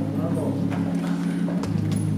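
Sustained low organ chords held steadily, the bass note dropping out for most of a second and coming back, with a few soft clicks.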